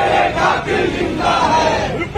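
Protest crowd shouting a slogan back in unison in answer to a leader's call, many voices together in two drawn-out shouts.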